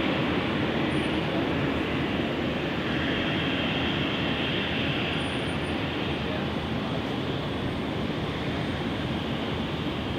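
Airbus A220's Pratt & Whitney geared turbofan engines running at taxi power, heard from a distance as a steady rush, with a faint higher whine that swells and fades in the middle.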